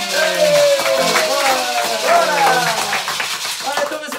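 A group clapping along while a pair of maracas is shaken, with several voices calling out over the claps.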